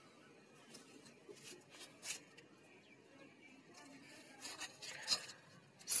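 Faint rustling of jasmine leaves and soft snaps as mogra flowers are picked by hand, with a few short crackles scattered through. The loudest come about four and a half to five seconds in.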